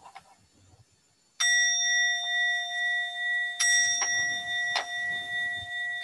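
Bowl-shaped Buddhist temple bell (kin) struck twice, about two seconds apart. Each strike rings on with a clear, steady tone, marking the start of the chant.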